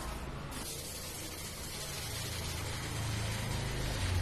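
A paste roller running over a strip of wallpaper laid on the floor, giving a steady hiss from about half a second in.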